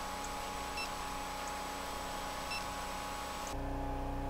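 Hydraulic power unit running: the electric motor and pump make a steady hum with several fixed tones. About three and a half seconds in it gives way to a quieter, different room tone.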